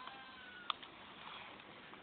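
Near-quiet room tone with a faint thin high squeak, then a single sharp click about two-thirds of a second in.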